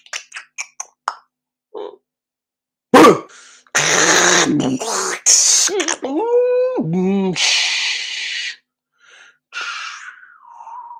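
A man's unaccompanied wordless vocal improvisation. It opens with quick mouth clicks and pops, then a loud sharp burst about three seconds in, stretches of hissing breath noise, and a pitched voiced tone that slides up, holds and drops low, ending on a long hiss.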